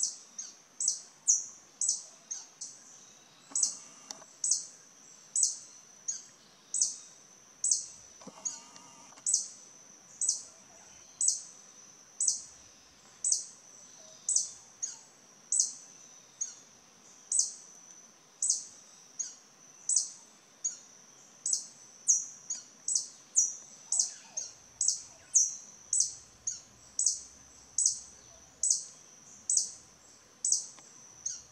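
Violet sabrewing hummingbird singing a long, steady series of sharp, high chips, about one and a half a second, sometimes coming in quicker pairs. This is the territorial singing of the male.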